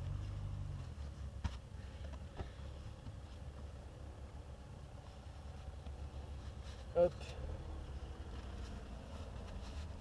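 Gloves and padded elbow guards being pulled on and fastened: light rustling with a few small clicks, over a steady low rumble. A short spoken "hop" about seven seconds in.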